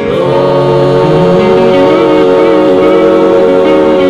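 A small gospel vocal group singing in harmony, settling onto a chord about a quarter second in and holding it.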